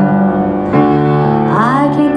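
A woman singing a slow pop ballad through a microphone and small amplifier, with upright piano accompaniment. She holds long notes, moves to a new one about three quarters of a second in, and slides up in pitch near the end.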